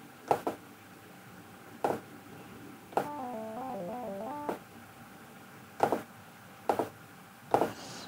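A one-oscillator SynthEdit software synth, a saw wave through a low-pass filter, plays a quick run of several stepping notes about three seconds in, lasting about a second and a half, heard faintly through the room microphone from the speakers. A few short clicks are scattered before and after the notes.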